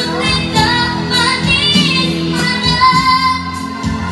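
A young female singer sings a Malay song through a microphone and PA over a recorded backing track, holding and bending long notes.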